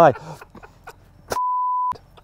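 A single steady beep at about 1 kHz, a little over half a second long, beginning about a second and a half in, with the rest of the sound cut out behind it: an edited-in censor bleep covering a word.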